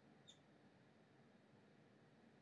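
Near silence: room tone, with one faint, brief high squeak about a quarter second in, from a dry-erase marker writing on a whiteboard.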